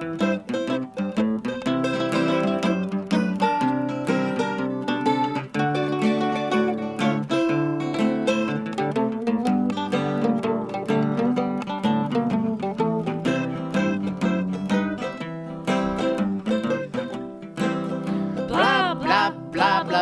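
Acoustic guitar strumming and a mandolin picking an instrumental break, with a voice coming back in singing near the end.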